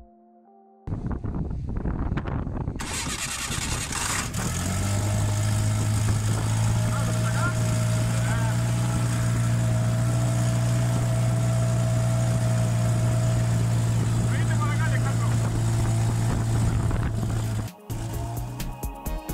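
Airboat engine and its large pusher propeller running. A rushing noise starts about a second in and settles into a steady low hum a few seconds later, holding until just before the end.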